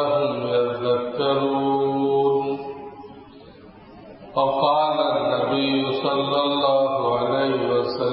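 A man reciting a Qur'anic verse in the melodic tilawah style, drawing out long held notes. The phrase trails off about two and a half seconds in, there is a short pause, and a new phrase starts a little past four seconds.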